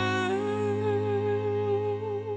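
A female vocalist holding one long note with a slight vibrato over a sustained low chord in a slow pop ballad.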